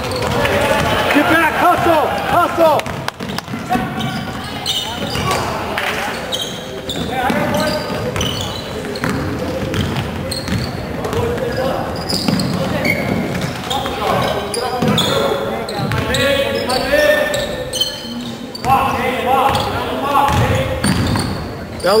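Basketball game sounds in a reverberant gym: voices of spectators and players calling out over a basketball being dribbled on the hardwood court.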